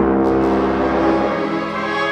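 Symphony orchestra playing sustained chords with brass and a deep bass line. The lowest notes drop away about a second and a half in.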